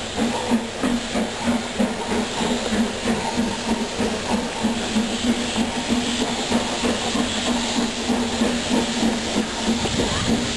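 Steam locomotive working, with a steady rhythm of exhaust beats over a continuous hiss of steam.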